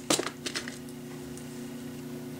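A few light clicks in the first half second as small glass crystal beads are picked up and handled, over a steady low hum.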